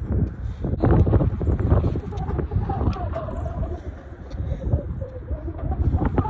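Wind buffeting the microphone, with a few scattered taps and slaps of a jump rope and sneakers on the court. A faint wavering tone runs through the middle.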